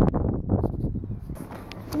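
Wind disturbance on the microphone: a low rumbling noise that eases after about a second.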